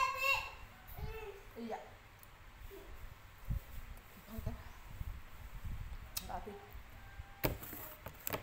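A child's high sing-song voice trailing off at the very start, then faint scattered voices and small handling knocks, with a sharper clatter near the end.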